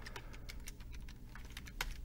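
Computer keyboard typing: a short run of soft, separate keystrokes as a word is typed, with one sharper key click near the end.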